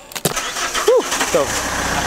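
A car engine starts about a second and a half in and settles into a low, even idle over street noise.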